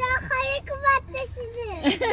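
A high-pitched, child-like voice calling out goodbye in a sing-song tone, several short calls in quick succession.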